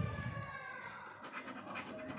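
A finger rubbing the scratch-off coating off a paper lottery ticket: a faint, rough scraping.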